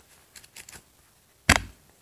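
Paper banknotes rustling softly in the hand, then a single sharp knock about a second and a half in, much the loudest sound here.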